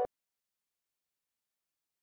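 Silence: a keyboard music chord cuts off abruptly right at the start, then nothing is heard, not even the marker on the paper.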